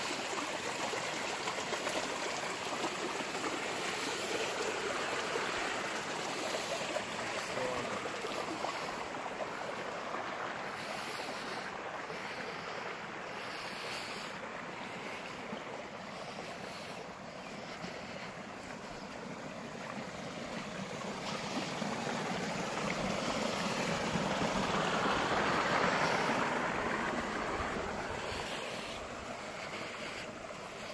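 Creek water running, a steady rush that swells louder about three-quarters of the way through before easing off.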